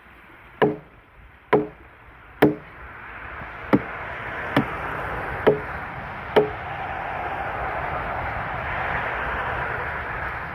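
An axe chopping into a log: seven sharp strikes about a second apart, the first three the loudest, stopping a little past halfway. A steady rushing noise grows louder behind the later strikes.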